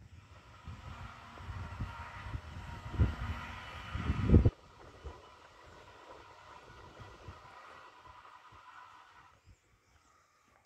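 Street traffic: a vehicle's low rumble builds for a few seconds and cuts off abruptly about four and a half seconds in. A quieter, steady city hum follows and fades out near the end.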